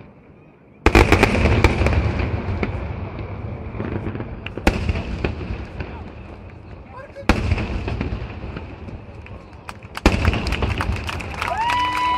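Aerial display fireworks in a closing barrage: a sudden loud burst about a second in, then continuous dense crackling broken by heavy booms roughly every two and a half seconds.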